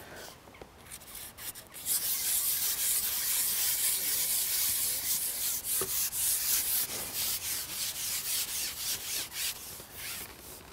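A fishing pole being pushed out across the water, its length sliding along with a steady rubbing hiss that starts about two seconds in and stops just before the end, with one small click near the middle.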